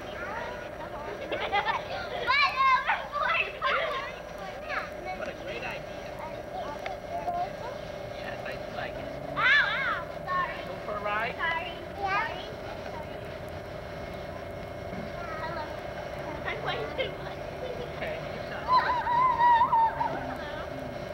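Young children's high-pitched voices, calling out and squealing in short spells a few seconds apart, with no clear words. A steady hum runs underneath.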